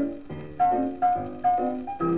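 Solo jazz piano from a 1934 78 rpm shellac record, playing on a Hacker record player and heard through its built-in speaker. Struck treble notes and chords come in an even beat, about two a second.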